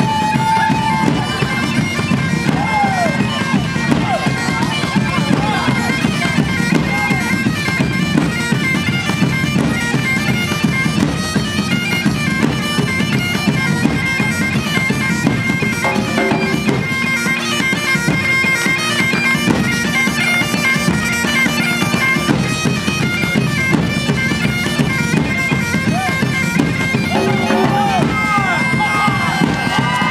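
Highland bagpipe playing a tune over its steady drones, with a band of large drums beating a dense, driving rhythm beneath it.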